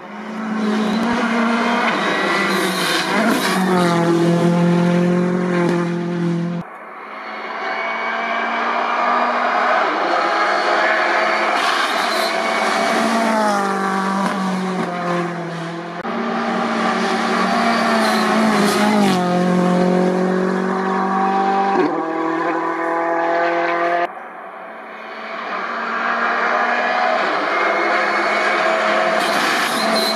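Ford Fiesta R5 rally car's turbocharged 1.6-litre four-cylinder engine at full stage pace, revs climbing and dropping in steps through quick gear changes, with a few sharp cracks. Several separate passes follow one another, broken off abruptly about a quarter, half and three quarters of the way through.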